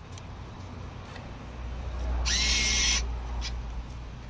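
Vending machine bill acceptor motor whirring briefly, about two seconds in, over a steady low hum.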